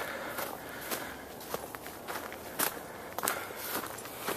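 Footsteps on dry leaf litter and dry grass, a short crunch at each step, about two steps a second at a walking pace.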